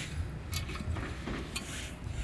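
A loose metal catch basin grate being gripped and lifted out of its frame, giving a few faint scrapes and taps over a low background rumble.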